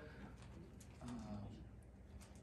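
A pause in a man's talk: quiet room tone, with one soft, low, drawn-out "uh" about a second in.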